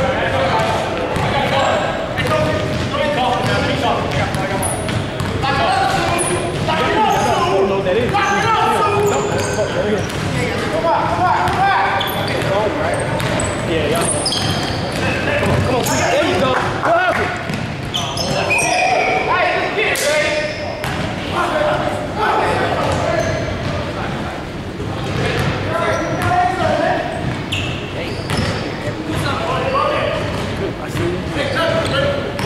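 Basketball game on a hardwood gym floor: the ball bouncing and players' sneakers squeaking in short high chirps, with players' voices and shouts throughout, all echoing in a large hall.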